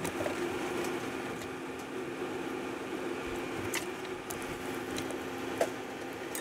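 Potato soup simmering in a pan over a steady low hum from a running kitchen appliance, with a few light clicks of utensils; the sharpest click comes near the end.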